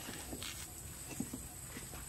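Kitchen knife slicing through a soft pork loaf, the blade giving a few faint, scattered taps on a wooden cutting board.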